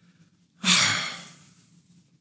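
A man's sigh: one breathy exhale starting about half a second in and fading away over about a second.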